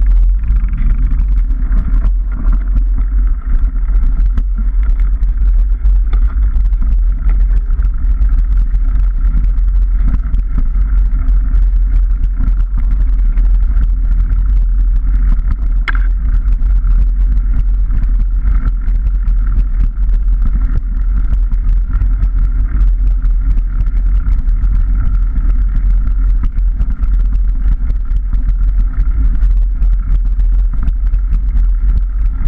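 Wind buffeting the camera microphone of a moving bicycle, with knobbly-tyre rumble on the rough, muddy track and many small clicks and rattles from the bike. There is a steady hum throughout and one sharper knock about halfway through.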